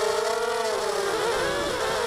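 The four brushless motors (Sunnysky X2204S 2300 kV, 5x3 props) of an FPV mini quadcopter whine as heard from its onboard camera. The whine holds one steady pitch at first, then about a second in splits into several pitches that waver up and down as the motor speeds change with the manoeuvring.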